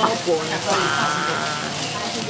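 Busy restaurant chatter over a steady hiss from a hot stone bibimbap bowl (dolsot) sizzling as its rice is stirred. A little under a second in, a high, wavering voice holds a note for most of a second.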